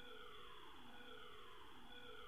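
Faint siren sounding in the background: a pitch that sweeps downward over and over, about once a second.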